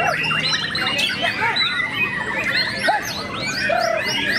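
Many caged white-rumped shamas (murai batu) singing over one another: a dense, continuous tangle of quick whistles, trills and chirps.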